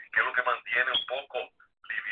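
A person speaking over a telephone line, the voice thin and narrow-sounding, with short pauses between phrases.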